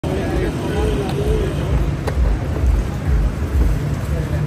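Busy street hubbub: people's voices over a heavy, uneven low rumble, with one sharp click about two seconds in.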